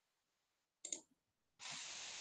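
Near silence broken by two quick clicks about a second in, then a steady hiss of background noise starting near the end.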